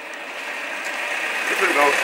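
A car approaching slowly over wet pavement, its engine and tyre noise growing steadily louder; a man starts speaking near the end.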